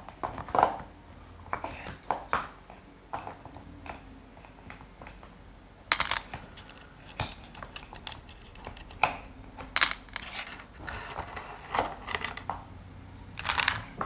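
Wooden base-ten place-value blocks (thousand cubes and hundred squares) and bead bars being stacked back into wooden trays: irregular clicks and knocks of wood set on wood.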